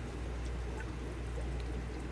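Steady aquarium background noise: water bubbling and trickling from an air-driven sponge filter, over a low steady hum.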